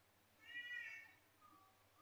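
A cat meowing once, faintly, about half a second in.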